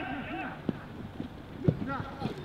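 Two sharp thuds of a football being kicked on a grass pitch, about a second apart, the second louder, amid players' shouts.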